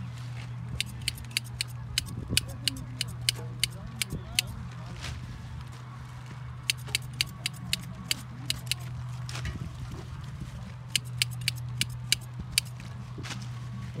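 Runs of sharp, quick clicks, about three a second, from green onions being trimmed and bunched by hand. The clicks come in three spells separated by short pauses, over a steady low hum.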